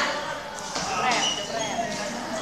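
Young voices calling out over each other, with a single thump a little under a second in.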